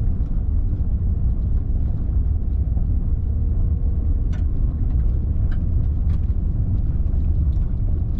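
Steady low rumble of a vehicle heard from inside the cab as it drives slowly along a dirt and gravel road, engine and tyre noise together. A few faint clicks come through near the middle.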